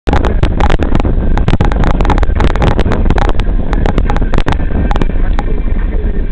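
Low rumble inside a car's cabin, with wind buffeting the microphone and many irregular sharp clicks and knocks, thickest in the first half.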